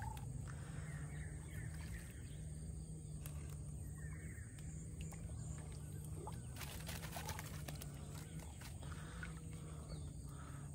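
Quiet outdoor ambience over floodwater: a low steady hum, faint bird calls, and a short cluster of light splashes and clicks a little past the middle as a wet gill net and catfish are handled in the water.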